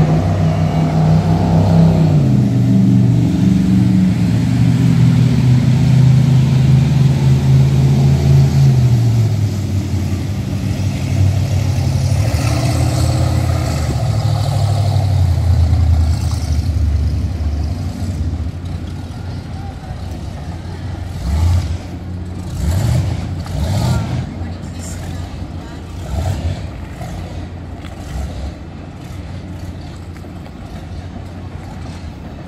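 Motorboat engines running on the water, a low steady drone whose pitch slowly falls. The drone fades out by about sixteen seconds in, leaving a quieter background with short, irregular sounds.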